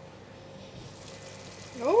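Mutton curry simmering in a covered pan on low heat, a faint steady hiss that grows a little brighter about a second in, as the glass lid is lifted. A voice says "Oh" at the very end.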